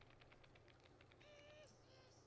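Near silence: faint rapid ticking, with a brief faint voice about halfway through, from the anime episode's soundtrack playing far below the room's level.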